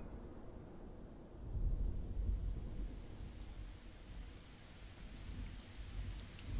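Low rumbling ambience that swells about one and a half seconds in and slowly fades, over a faint steady hiss.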